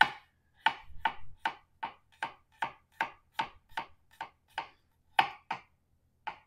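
Chef's knife chopping garlic on a Val Board cutting board, a hard composite board: a steady run of sharp knocks of the blade on the board, about three a second, with a short break near the end.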